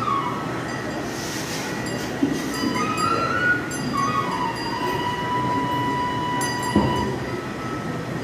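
A flute-like melody plays a few stepped notes and then holds one long steady note, over a background of crowd noise, with a couple of sharp knocks.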